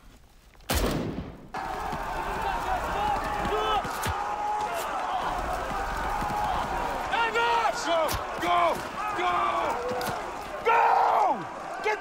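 A loud blast about a second in, then a steady rushing noise under men shouting, with a few sharp gunshot cracks.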